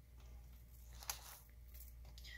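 Faint scraping and ticking of a pry tool working a laptop's display panel loose from its adhesive, with one short sharp click about a second in.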